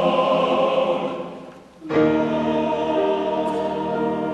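Large men's choir singing a held chord that is released and fades away into the hall's reverberation. About two seconds in, the choir comes back in loudly together on a new chord and holds it.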